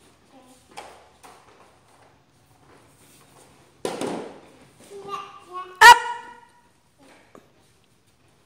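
A toddler's high-pitched vocal squeals about five to six seconds in, the loudest one sharp and short near the six-second mark. A brief scuffing noise comes about four seconds in.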